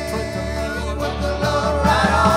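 Country-rock band playing live: electric guitars, mandolin and drums with singing. Long held notes give way to busier strumming and drum hits about a second in.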